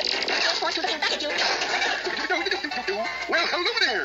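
Cartoon soundtrack playing through a tablet's speaker: music and sound effects with voice-like sounds, some sliding up and down in pitch near the end.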